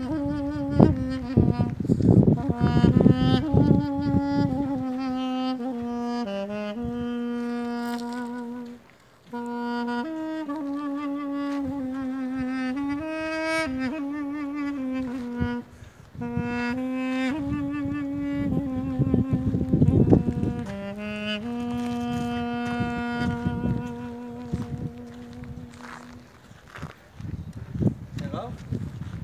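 Armenian duduk playing a slow melody of long, sustained notes with wavering ornaments and slides between them, breaking off briefly twice, about nine and fifteen seconds in, and fading out near the end. Bursts of low rumbling noise sound under the melody near the start and around twenty seconds in.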